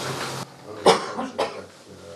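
A man coughing twice in quick succession, the first cough the louder.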